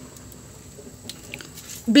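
Mostly quiet handling noise with a few faint light clicks about a second in; a woman starts speaking near the end.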